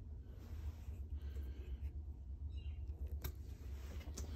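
Faint scraping and a few light clicks of a glue-coated wooden dowel being pressed by hand into a drilled hole in an axe handle, over a low steady hum.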